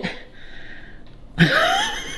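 A man laughing, breathy and wheezy: a quiet exhaled hiss of laughter, then a louder voiced burst about one and a half seconds in.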